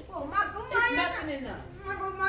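A child's raised voice whining, its pitch sliding up and down.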